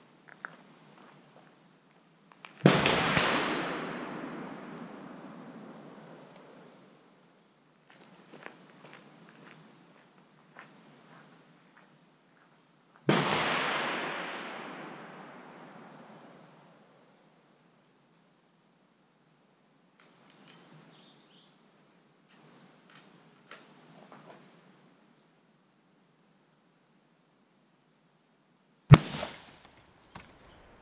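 Three rifle shots. Two come about ten seconds apart, each with an echo dying away over roughly three seconds. Near the end a sharper, louder crack comes as a bullet strikes and splits the ballistics gel block.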